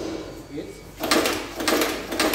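Sebat SBTP303M-Y automatic snap fastening press cycling, setting snap fasteners: a run of sharp mechanical strokes about twice a second, starting about a second in. The machine is working normally, with its safety sensors satisfied.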